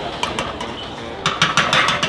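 Metal kitchenware clinking: a spoon knocking against a stainless-steel stock pot, with a few scattered clinks and then a quick run of them in the second half.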